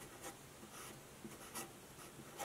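Marker pen writing on paper: a faint run of short strokes of the tip across the page.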